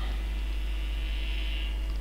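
Steady low electrical mains hum in the recording, with a faint higher hiss that fades out near the end.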